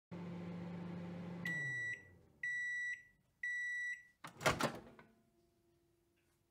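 Microwave oven running with a low hum that winds down as the cycle ends, then three beeps about a second apart signalling it is done. The door then pops open with a double clunk, the loudest sound.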